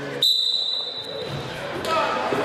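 A referee's whistle blown once, a sharp steady high blast of under a second, starting the wrestling from the referee's position. Scuffling on the mat follows, with a knock near the end.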